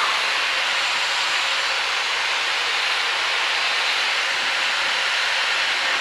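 Steady hiss of cockpit noise inside an L-39 Albatros jet trainer in flight, from its turbofan engine and the air rushing past the canopy.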